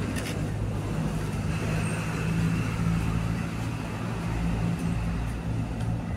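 A motor running steadily at idle, a low even hum with no change in pitch.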